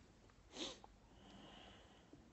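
A single short sniff through the nose about half a second in, against near silence.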